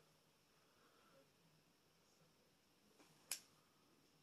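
Near silence, broken by a single short, sharp click a little over three seconds in.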